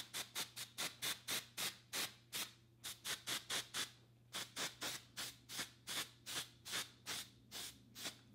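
Aerosol root concealer touch-up spray (Rita Hazan, light brown) let out in quick short puffs of hiss, about four a second. There are two brief pauses around the middle, and it stops just before the end.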